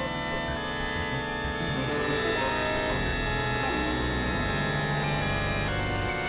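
Experimental electronic synthesizer drone music: many sustained tones layered together, the tones shifting about two seconds in and again near the end.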